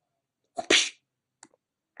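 A short, breathy voice-like burst, like a sneeze or a sharp exhaled exclamation, about half a second in, just after a small click; a faint tick follows near the middle.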